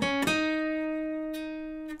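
Acoustic guitar, tuned down a half step, plucking two notes on the G string, the 7th fret and then the 9th. The higher note rings out and fades slowly for most of the time.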